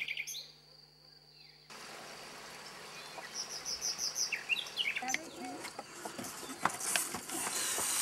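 Outdoor ambience with a small bird chirping: a quick run of about five high notes, then a few gliding chirps. In the second half there are faint voices and a few light knocks.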